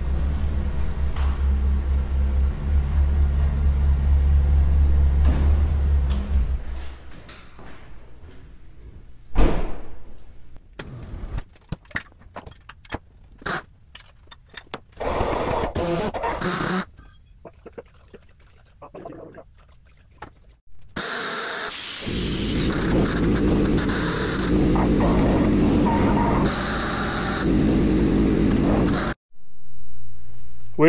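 A truck engine running with a low rumble for the first several seconds. Then scattered clanks and knocks of chain and metal, and an overhead electric hoist running in a short burst and then steadily for about seven seconds near the end, lifting the axle out of the truck bed.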